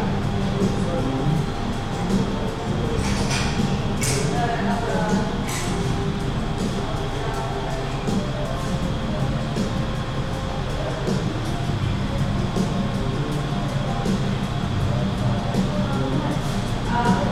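Indoor shop ambience: background music playing with indistinct voices of people talking, and a few brief sharp sounds about three to five seconds in.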